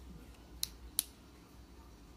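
Two short, sharp clicks, less than half a second apart, over a faint low hum.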